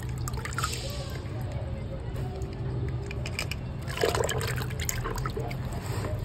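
Water sloshing, trickling and dripping as a small plastic toy tractor is dunked and rubbed by hand in a plastic tub of water, with light irregular clicks of plastic. A steady low hum runs underneath.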